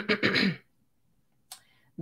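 A woman clears her throat once, a short rough burst in the first half-second, then a pause of silence.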